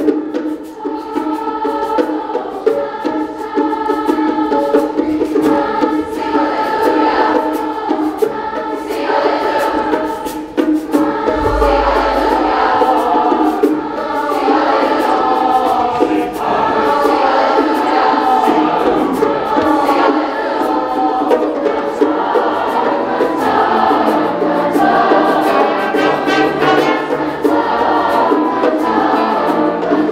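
Large school choir singing a song together, backed by a small band of saxophones, drum kit and piano, with a steady drum beat underneath.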